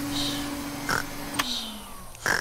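Cartoon vacuum cleaner humming steadily, then switched off with a click about one and a half seconds in, its motor falling in pitch as it winds down. Short, soft baby-pig squeaks sound over it.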